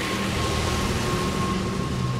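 Low droning soundtrack with a steady high tone held throughout over a rumbling bass.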